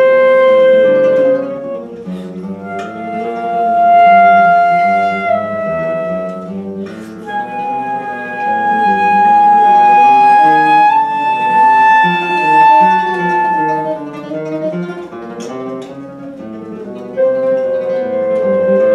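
Flute and classical guitar duo playing: the flute holds long, slow melody notes over the guitar's plucked accompaniment. The flute pauses briefly about two seconds in and again for about three seconds near the end, leaving the guitar alone, then comes back in.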